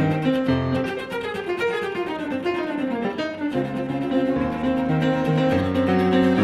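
Cello and grand piano playing together: a repeated low figure of short notes runs throughout, with a quick run of falling notes in the middle.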